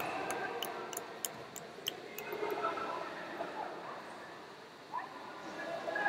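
A few scattered hand claps, about three a second for the first two seconds, then the low hum of a sports hall with faint distant voices.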